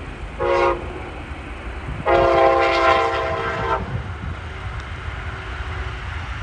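Train horn sounding a short blast, then a longer blast of nearly two seconds, over a steady low rumble.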